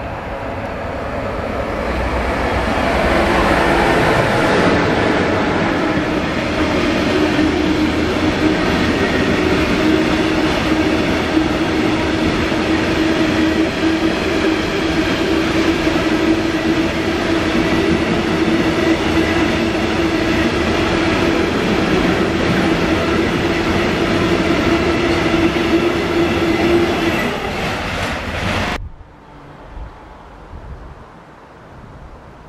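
A long freight train of covered hopper wagons, hauled by an electric locomotive, passing close by. The rumble grows over the first few seconds, then holds loud and steady with a steady droning tone running through the passing wagons. It cuts off suddenly near the end.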